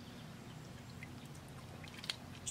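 Water pouring from a tipped plastic bucket into a garden pond, a soft, steady pour.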